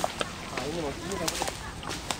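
Sharp swishes and snaps of leaves and branches brushing past as people push through dense undergrowth on foot, with a brief wavering call about a second in.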